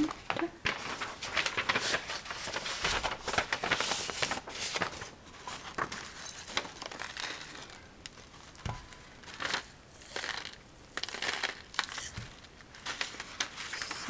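A folded sheet of paper being handled while red peppercorns are tipped from it into a pepper grinder: a run of short scratchy crackles and rustles, thick in the first half and sparser later.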